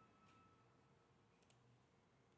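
Near silence, with a few faint computer mouse clicks, two of them close together about one and a half seconds in.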